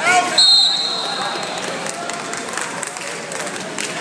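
A referee's whistle blown once, a steady high note lasting about a second, over gym crowd chatter and a few knocks.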